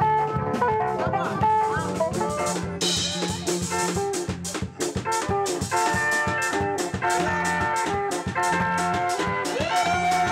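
A tsapiky band playing: fast, bright electric guitar lines over a driving drum-kit beat. A high sung note rises and is held near the end.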